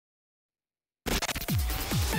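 Silence, then about a second in electronic music cuts in abruptly: a news show's segment-opening sting with several quick bass notes sliding steeply down in pitch and stuttering, scratch-like hits.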